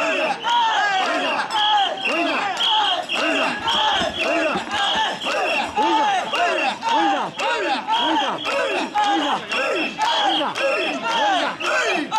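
Mikoshi bearers chanting rhythmic shouts in unison as they carry the portable shrine, with hand claps keeping time among the crowd.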